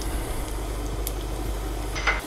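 Chopped onion sizzling as it hits hot peanut oil in a frying pan, a steady hiss, with a steady low hum underneath.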